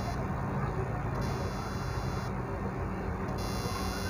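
Steady background noise with a faint low hum.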